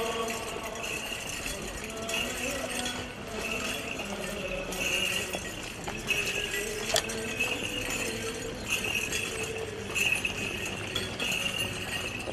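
Bells on a swinging Orthodox censer jingling in a steady rhythm, a little more than once a second, with singing voices behind.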